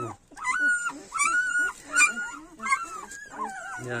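Kangal dog whining: a run of about six short, high-pitched whines, each less than a second apart.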